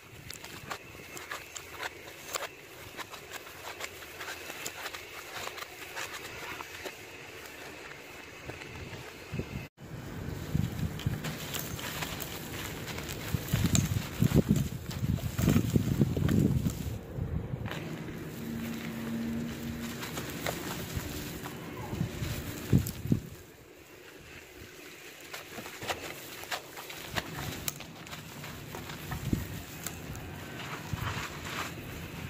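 Gloved hands crushing and crumbling moulded powdered charcoal: a dry, gritty crunching with the crackle of grains pouring and pattering onto the floor. It breaks off briefly about ten seconds in, then returns louder and heavier for a stretch before settling.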